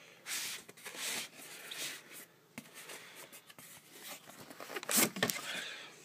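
Cardboard of an AirPort Extreme retail box rubbing and scraping as the box is slid open from the side, in short bursts, with the loudest scrape about five seconds in.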